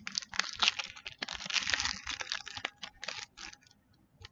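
Foil wrapper of a Pokémon TCG booster pack crinkling and tearing as it is opened by hand: a run of irregular crackles, busiest around the middle.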